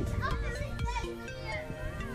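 Young children's voices calling and chattering as they play, over music with steady held notes.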